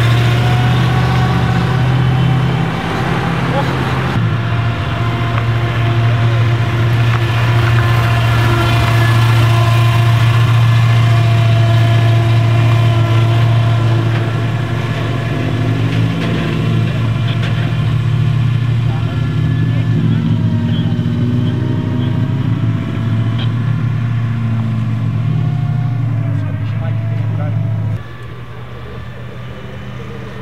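1947 Tatra 87's air-cooled overhead-cam V8 running: a rising note as the car pulls away in the first seconds, then a steady low drone as it idles and creeps at low speed. It is noticeably quieter in the last two seconds.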